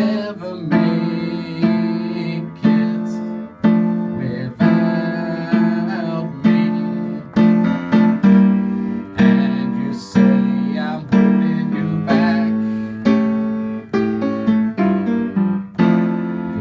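Upright piano played solo, chords struck about once a second, each ringing and dying away before the next.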